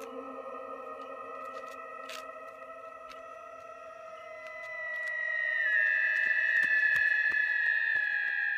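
Eerie electronic drone of several steady held tones, like a horror sound effect, swelling louder and brighter from about five seconds in as the higher tones take over.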